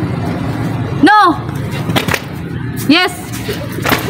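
A voice calls out short single words about two seconds apart: the yes/no commands of a children's jumping game. Two sharp slaps fall between the calls.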